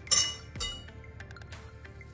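A wire whisk clinking twice against a metal saucepan near the start, sharp metallic strikes with a short ring, as the butter in the pan is stirred to melt it. Faint background music runs underneath.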